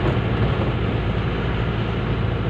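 Steady driving noise heard from inside a car cabin: a low, even engine drone under the hiss of tyres rolling on a wet road.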